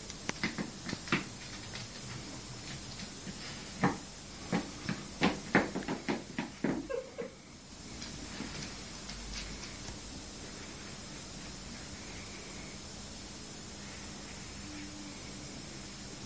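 A tortoise's claws clicking and tapping on a hardwood floor in irregular ticks, coming quicker and louder after about four seconds and stopping about seven seconds in. After that only a steady faint hiss remains.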